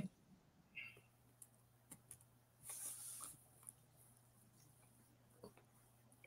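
Near silence on a video call, with a few faint clicks and a brief soft hiss about three seconds in.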